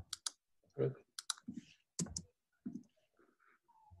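Several sharp computer clicks, some in quick pairs, over the first two or three seconds, made while clicking to advance presentation slides, with faint low sounds between them.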